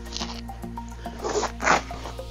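Short rasping rustles of a fleece mattress topper being handled and laid onto a carp bed's padded cover, three brief bursts, over steady background music.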